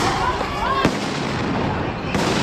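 Two sharp firework bangs a little under a second apart, with people shouting between them and a crackling noise trailing after the second.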